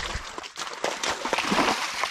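A dog splashing through a shallow, muddy creek: a run of irregular splashes and sloshes.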